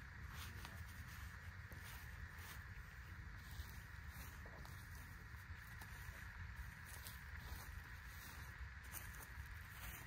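Faint rustling and soft scuffs of gloved hands pressing loose soil around a newly planted shrub, over a low steady outdoor background.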